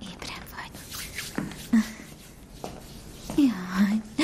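A woman's soft, whispered voice murmuring, with a longer hummed 'mm' near the end.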